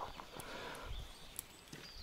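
Faint scattered clicks and rustles of hands handling a just-caught roach to take it off the hook, with one sharper click a little past the middle.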